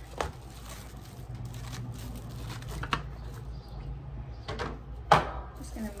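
Handling noise from plastic shrink-wrap film and a tabletop bar sealer being moved across a table: light knocks and rustles, with a sharp, louder knock about five seconds in.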